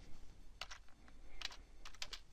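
Computer keyboard keystrokes: a handful of separate key presses as a short piece of code is typed.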